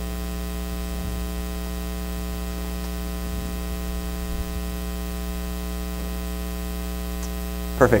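Steady electrical mains hum, a low buzz with a long stack of evenly spaced overtones and no change in level.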